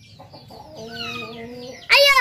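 Chickens calling: a held, even-pitched call about a second in, then a loud call sliding down in pitch at the very end.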